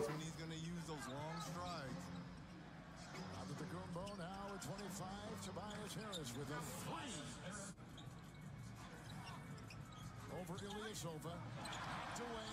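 NBA game broadcast playing at low volume: a commentator talking over arena crowd noise, with a basketball bouncing on the court and short clicks of play.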